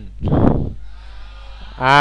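A man's voice, close on a headset microphone. It starts with a short breathy sound, and near the end he begins a drawn-out exclamation whose pitch wavers. A steady low hum lies underneath.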